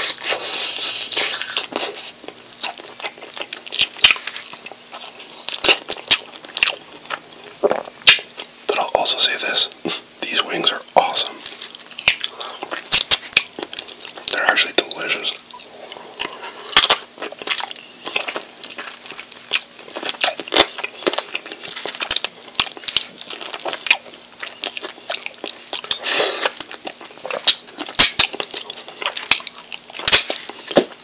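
Close-miked eating of sauce-covered chicken wings: biting and pulling meat off the bone and chewing, heard as many irregular wet clicks and smacks.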